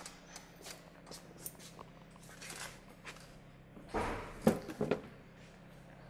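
Plastic front bumper cover of a car being handled and set down: faint clicks and rustling, then a soft bump and a couple of sharp clicks around four to five seconds in, over a steady low hum.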